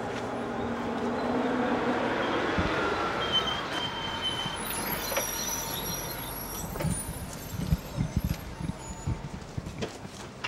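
Limousine pulling up: engine and tyre noise, with a tone that falls as it slows and thin high whines near the middle. In the last few seconds come a string of short sharp clicks and knocks.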